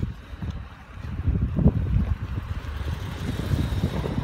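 Wind buffeting the microphone in uneven gusts, with a small minivan driving past on the road; its tyre and engine noise builds over the second half.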